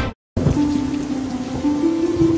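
News theme music cuts off abruptly, followed by a brief silence. Then comes the hiss of steady rainfall with soft, sustained music underneath, its held note stepping up in pitch partway through.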